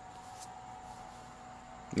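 Quiet room tone: a steady faint hiss with a thin steady hum, and a brief faint rustle about half a second in.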